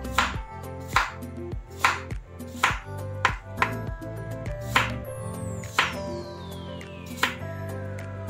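Kitchen knife slicing a large cucumber into rounds on a wooden cutting board: a sharp tap of the blade on the board with each cut, about once a second at uneven intervals. Background music plays throughout, with a long falling sweep in its second half.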